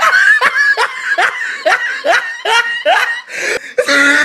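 Loud laughter in a regular run of short, high bursts, each rising in pitch, about two a second.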